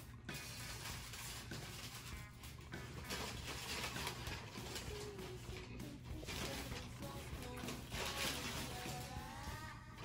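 Quiet background music with a faint melody, under a steady low hum.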